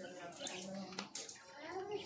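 Wet splashing and rubbing as hands wash a soaked husky puppy's coat, with a couple of sharp clicks about a second in. Quiet voices run alongside.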